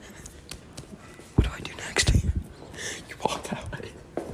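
Quiet, half-whispered talk from young men, with a short thump about a second and a half in.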